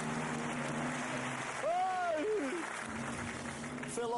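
Studio audience applauding, with a low sustained music bed underneath and a brief voice sound about halfway through.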